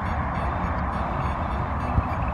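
Steady rumble of traffic from a nearby motorway, with a short knock at the very end.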